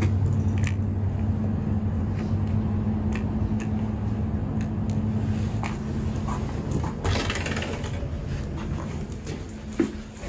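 A steady low mechanical hum for the first six seconds or so, then fading, with a few light clicks, and a glass entrance door being opened about seven seconds in.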